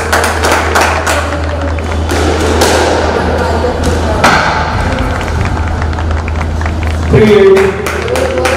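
Squash rally: the hard rubber ball cracks off rackets and thuds against the walls and glass in a run of sharp knocks at uneven spacing, over a steady low hum. A voice comes in near the end.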